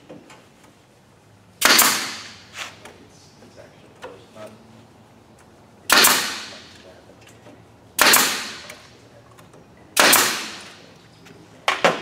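Pin nailer firing nails into MDF panels: four loud shots a couple of seconds apart, each with a short fading tail, and a lighter knock near the end.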